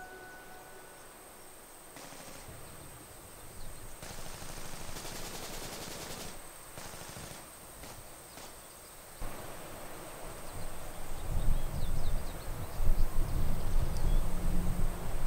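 Outdoor battlefield ambience: distant rapid gunfire crackles over a steady hiss. A low rumble builds and grows louder about eleven seconds in.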